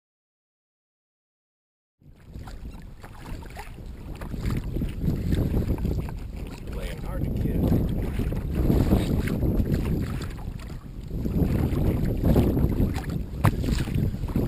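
Silent for about two seconds, then wind buffeting the microphone and water washing around a kayak on the open sea. The noise swells and eases every few seconds.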